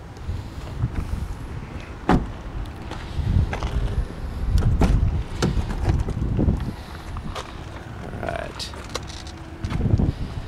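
Low wind rumble on the microphone with handling noise and a scattered series of sharp knocks and clicks, the loudest about two seconds in.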